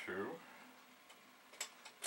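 Two or three short, sharp plastic key clicks near the end, from a key being pressed on the Commodore setup as the C2N Datasette is about to be rewound.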